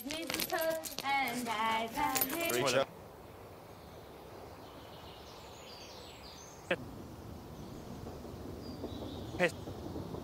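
People talking and laughing for about three seconds, then the sound suddenly drops to a faint hiss with a few faint high chirps and two short clicks.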